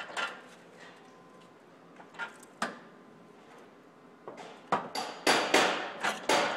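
A few light metallic clicks, then near the end a quick run of hammer blows on sheet metal, about three a second, each with a bright metallic ring.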